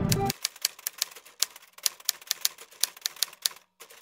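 Typewriter sound effect: an uneven run of sharp key clicks, about four or five a second, pausing briefly near the end. It starts right after loud music cuts off a moment in.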